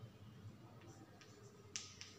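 Chalk on a blackboard as digits are written: a few faint ticks, then one sharper tap-and-stroke near the end, over a quiet room.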